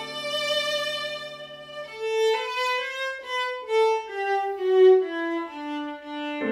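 Viola playing a slow nocturne melody over a pre-recorded Roland FP-30 digital piano accompaniment. A note is held for about two seconds, then the line climbs to a high note about three seconds in and steps back down.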